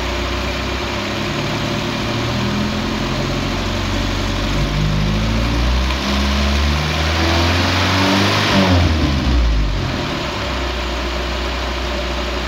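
Carbureted engine on a Weber 32/36 DGV-type two-barrel carburetor, revved up slowly in steps over about eight seconds, then dropping back to a steady idle near the end. This is a vacuum-gauge check of the carburetor's idle-to-transition jetting as RPM rises.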